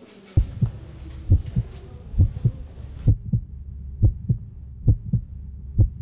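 A heartbeat sound effect: steady paired lub-dub thumps, about one double beat a second, over a low hum.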